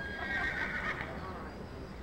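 A horse whinnies once, a high call lasting about a second, over a steady low background hum.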